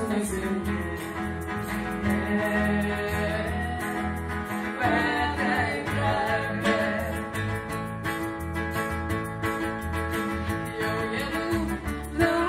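Live folk-rock band music: an acoustic guitar played with an electric bass guitar keeping a pulsing low line, with female voices singing at times.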